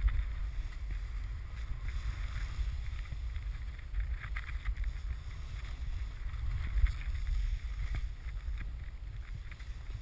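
Wind rumbling on a pole-mounted camera's microphone as a snowboard rides through deep powder, with a faint hiss and scattered light scrapes of snow under the board.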